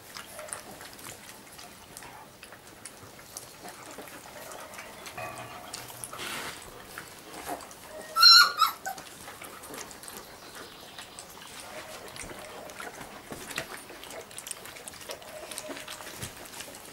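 Black giant schnauzer puppies lapping milk from a shallow pan, a busy patter of small wet clicks from several tongues at once. About eight seconds in, one puppy gives a short, loud, high squeal.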